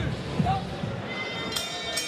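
Fight bell struck to start the round: a bright metallic ringing comes in sharply about a second and a half in, over background music and voices in the hall.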